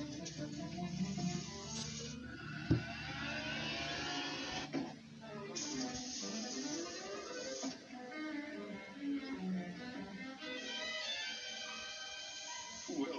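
Cartoon soundtrack playing from a television: music with comic sound effects. There is a sharp bang nearly three seconds in, and sliding tones that swoop down and back up.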